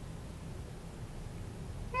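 Quiet, steady low background rumble with no distinct sounds in it; a woman's voice starts right at the end.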